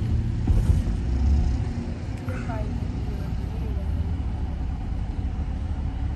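Chevrolet Camaro SS convertible's V8 running while the car drives with the top down: a steady low rumble of engine and road noise heard from inside the open cabin.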